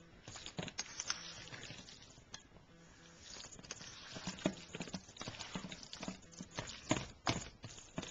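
A metal spoon stirring thick mashed cauliflower in a stainless steel bowl: irregular soft taps and clicks as it knocks and scrapes against the bowl, a few sharper knocks about a second in and again near the end.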